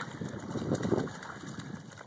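A dog splashing through shallow water as it wades out toward the bank, an irregular sloshing with small crackly splashes.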